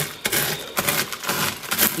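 Pork rinds crunching and crackling inside a plastic zip-top bag as a whole onion is pressed and rolled over them to crush them into crumbs: a run of irregular crunches.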